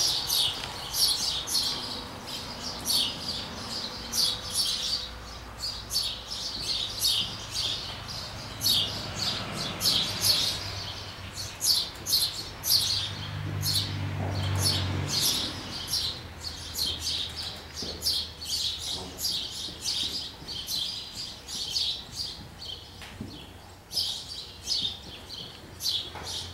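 Small birds chirping: short, high chirps repeated a few times a second, with brief pauses, over a faint low hum.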